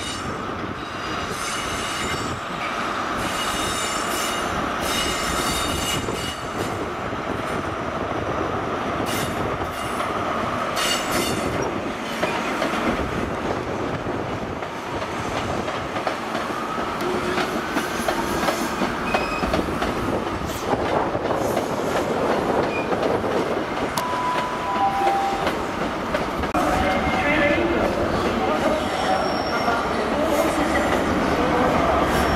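InterCity 125 High Speed Train running slowly through the station pointwork, its wheels squealing on the curves, with a continual clatter of wheels over rail joints and crossings.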